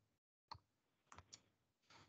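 Near silence, with a few faint clicks: one about half a second in and three close together a little past a second in.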